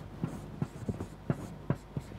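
Marker writing on a whiteboard: a quiet series of short taps and strokes, about one every third of a second.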